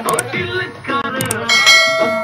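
Subscribe-button overlay sound effect: mouse clicks, then a bright bell ding about one and a half seconds in that rings on, over background music.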